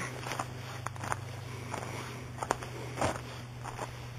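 Footsteps on a dry leaf-littered dirt trail: a string of short, uneven crunches and clicks, with a steady low hum underneath.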